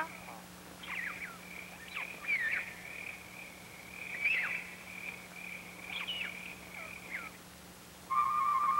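Birds chirping with short calls that fall in pitch, scattered over a steady high whistle-like drone, as on a film's forest ambience track. A faint steady low hum runs underneath.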